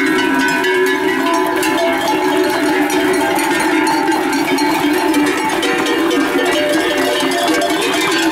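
Many livestock bells on the collars of a herd of running horses, clanging together in a continuous, dense jangle, with hoofbeats on the dirt track beneath.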